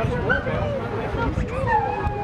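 A dog barking and yipping amid the chatter of people talking.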